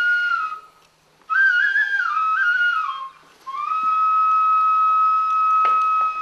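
A flute playing slow melody: a long held note that dips and fades just under a second in, a short stepped phrase, then another long, steady held note.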